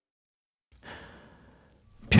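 After a moment of silence, a faint breathy sigh begins a little under a second in and fades over about a second.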